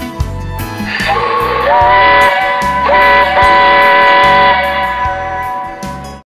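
A steam locomotive whistle sounds a steady chord of several notes in two long blasts over guitar music. A hiss of steam comes just before the first blast, about a second in, and the whistle stops a little past the middle.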